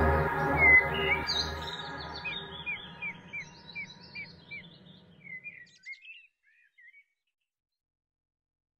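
Song music fading out under a small songbird's rapid series of short chirps, about three a second, which trail off near the end.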